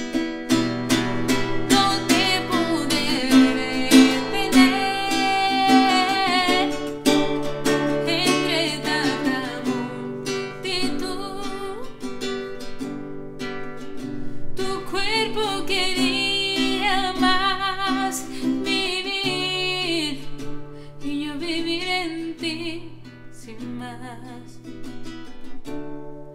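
A nylon-string classical guitar strummed as accompaniment to a woman singing a slow ballad.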